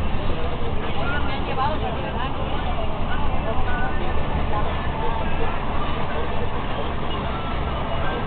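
Steady low rumble of a moving vehicle heard from inside the cabin, with people talking indistinctly over it.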